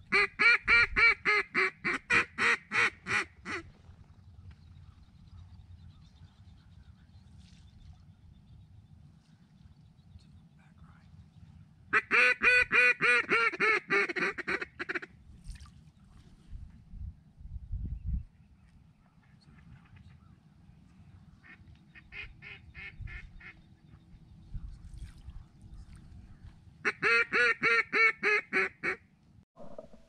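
A mallard duck call blown in three loud series of rapid quacks, each a few seconds long and dropping off toward its end, with a fainter series between the second and third. It is a hen-mallard calling sequence used to draw circling mallards in to the decoys.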